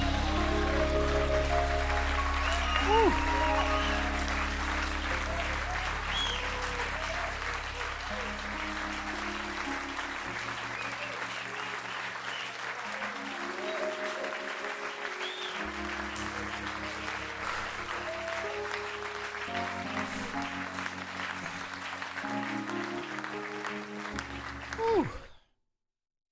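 Audience applauding over held instrumental chords as a live gospel song ends. The sound cuts off abruptly about a second before the end.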